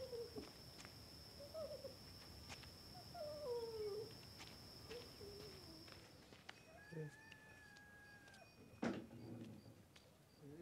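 Animal calls: several short cries that glide downward in pitch, over a steady high-pitched drone. About six seconds in the drone stops and a quieter room sound takes over, with a long held tone and a single sharp knock near the end.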